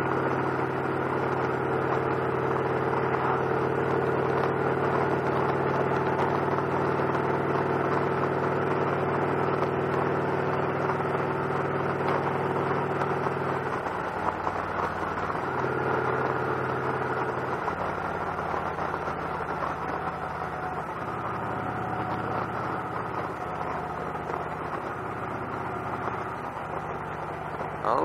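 Victory Cross Roads motorcycle's V-twin engine running at a steady cruise, with road and wind noise. About halfway through, the engine note drops and turns uneven as the throttle eases off while closing on a car ahead.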